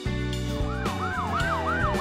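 A police siren starts about half a second in, sounding a fast yelp of repeated pitch sweeps, about three a second, over a steady background music track.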